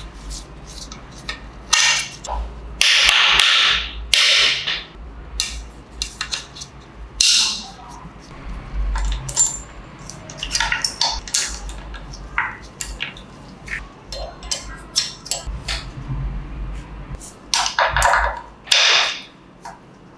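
Steel gearbox gears and shafts of a Triumph Tiger Cub engine clicking and clinking as they are fitted by hand into the aluminium crankcase, with a few longer metal scrapes as parts slide into place.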